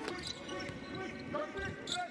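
A basketball being dribbled on the court, with a few low bounces in the second half, under faint voices echoing in the arena.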